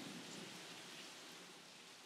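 Near silence: a faint, steady hiss, with the music that came before trailing away at the start.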